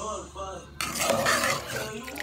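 Metal ladle scraping and stirring through a metal pot of simmering mung beans, starting about a second in, over background music with singing.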